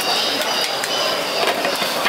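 A glass lid clattering as it is set back onto a large electric cooking pan, a few sharp clinks over steady market crowd noise.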